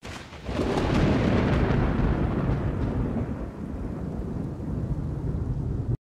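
Thunder sound effect: a sudden crack that swells within half a second into a long, deep rolling rumble, with a hiss like rain underneath.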